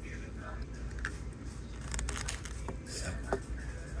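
Light eating sounds at a table: chewing salad, with a few soft clicks and crinkles from a plastic clamshell salad container, over a steady low room hum.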